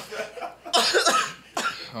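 A man coughing twice, a longer cough about two-thirds of a second in and a shorter one near the end.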